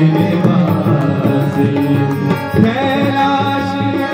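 Hindu devotional bhajan played live on harmonium and tabla, with a man singing over the held harmonium chords and steady tabla strokes. A new sustained phrase enters about two-thirds of the way in.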